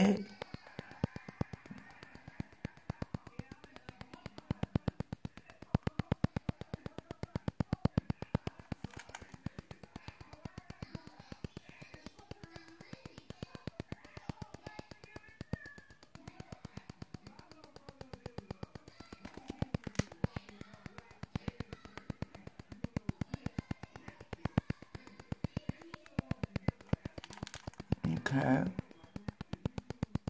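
Ultrasonic skin scrubber running in infusion mode, giving off a rapid, even ticking.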